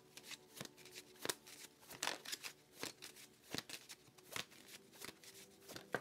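Tarot cards being shuffled by hand: a faint string of soft, irregular card clicks and slaps, a few each second.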